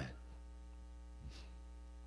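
Steady electrical mains hum with a row of evenly spaced overtones, carried in the microphone and sound-system line, with a brief faint hiss about a second and a quarter in.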